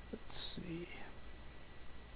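A man's brief muttered, half-whispered word, beginning with a sharp hiss about a third of a second in, over a steady low electrical hum.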